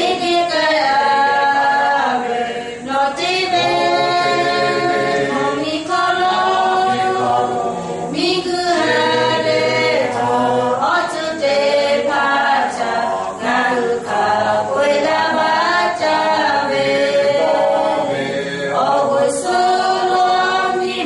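A small group of singers singing a cappella from song sheets, several voices together in long held notes.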